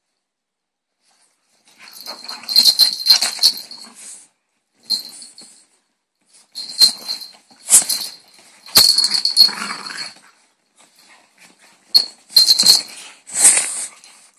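French bulldogs play-fighting, the bell and tags on their collars jingling in irregular bursts, with dog noises mixed in; it starts about two seconds in.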